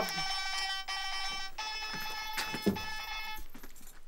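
Phone ringtone signalling an incoming call: a buzzy electronic tone held for about a second and a half, then a slightly higher one that cuts off about three and a half seconds in.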